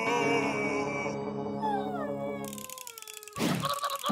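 A cartoon character's long anguished wail over sustained background music, sliding down in pitch and fading out. A different music cue starts abruptly near the end.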